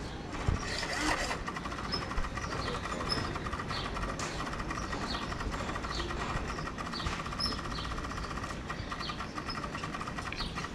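Small birds chirping in repeated short, falling chirps, over a steady high-pitched buzz with a fast flutter that sets in about a second in.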